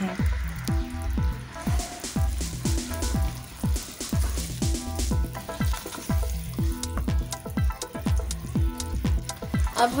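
Ghee bubbling and sizzling with melting sugar in a pan as a spatula stirs it. Background music with a steady beat of drum hits runs under it.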